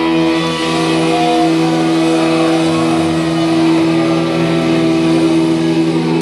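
Distorted electric guitars and bass letting a chord ring out, played loud through a concert PA with the drums stopped. A short higher guitar note or feedback line sounds about a second in.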